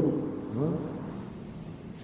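A pause in spoken narration: a word trails off, a brief faint voice sound follows about half a second in, then only low background hiss.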